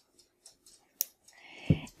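Tip of a small serum tube snapping off with one sharp click about halfway through, among faint handling clicks. A short hiss and a soft thump follow near the end.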